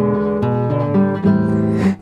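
Classical nylon-string acoustic guitar strumming chords as accompaniment between sung phrases, with new chords struck about half a second in and again a little past the middle.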